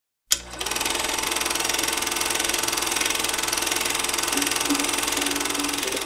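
Podcast intro sound bed: a steady, fast mechanical clatter with held tones under it, starting with a click just after a moment of silence; a low tone comes and goes near the end.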